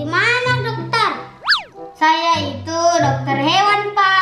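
Playful children's music with voice-like sounds over a steady low note, and a whistle-like tone that swoops down and back up about a second and a half in.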